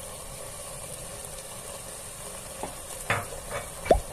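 Diced dried beef tipped into an aluminium pot of frying vegetables, which sizzle steadily as a spatula stirs, with a few short knocks of the spatula and meat against the pot in the last second or so.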